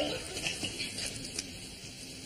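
Faint scattered rustling and a few light clicks that fade toward the end.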